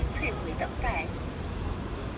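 Busy city street: a steady low rumble of road traffic, with passers-by briefly talking in the first second.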